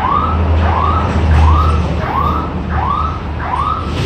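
A short high chirp that rises and falls in pitch, repeating steadily about twice a second, over a steady low hum.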